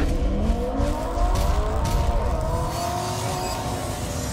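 Car engine revving as a sound effect: its pitch climbs steadily for about two seconds, then holds high and eases off slightly near the end.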